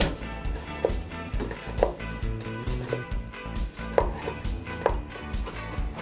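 Background music with a chef's knife mincing garlic on a wooden cutting board, the blade knocking on the board about once a second.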